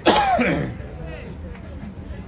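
A man's loud shout right at the start, dropping steeply in pitch over under a second, followed by faint scattered voices.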